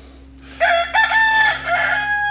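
Rooster crowing, starting about half a second in as a series of high, drawn-out notes.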